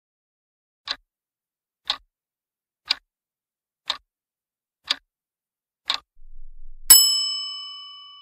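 Countdown timer sound effect: a clock ticking six times, one tick a second, then a bright bell-like chime that rings and fades, marking the answer reveal.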